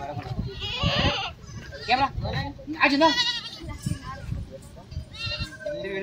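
A goat bleating three times, quavering calls, among people's voices.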